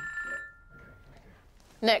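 Electronic telephone ring: a short, high two-note tone that stops about half a second in and dies away within about a second, then a woman answers the call.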